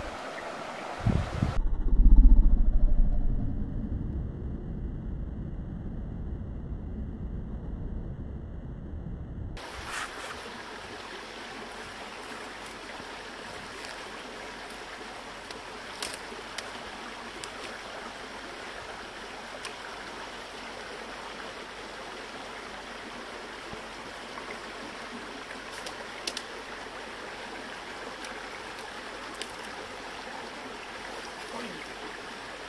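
Steady rush of a small stream's running water, with a few faint clicks. In the first ten seconds a muffled low rumble, loudest as a thump about two seconds in, cuts off suddenly and the stream takes over.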